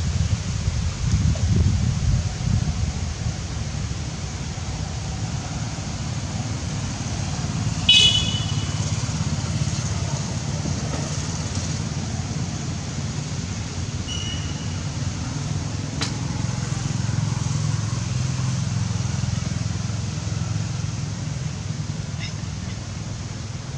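Steady low outdoor rumble, with a brief high-pitched squeak about eight seconds in, a fainter short squeak a few seconds later and a light click soon after.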